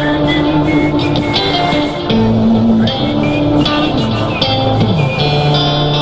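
Live rock band playing an instrumental passage between sung lines, a guitar carrying the melody over a bass line that changes note every second or so, with a few sliding notes.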